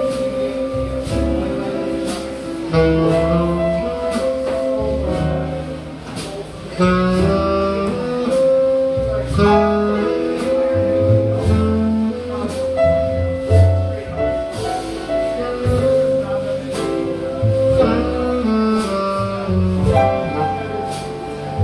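A jazz quartet plays a slow ballad at an easy swing. A saxophone carries the melody in long held notes over piano, bass and drums, with steady cymbal beats.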